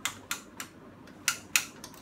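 About half a dozen short, sharp, irregularly spaced clicks from the joints of a Takara Diaclone Robot Base toy robot being moved by hand.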